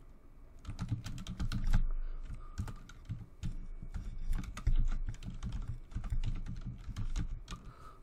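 Typing on a computer keyboard: a fast, uneven run of keystrokes starting about a second in.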